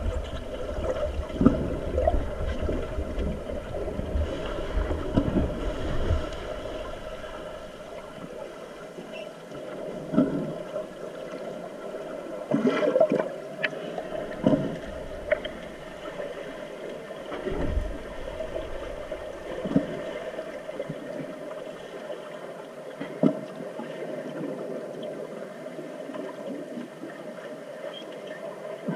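Muffled underwater noise picked up by a camera on the pool floor: water churned by players' fins and rising air bubbles, with a steady hum underneath. Scattered dull knocks come through about a dozen times, with heavier low rumbling in the first few seconds.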